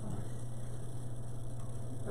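Steady low electrical hum, a mains hum carried through the church's sound system.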